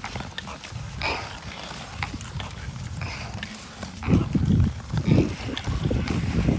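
Ice skates scraping and gliding over lake ice, with scattered clicks and scrapes. From about four seconds in, wind buffets the microphone in strong gusts.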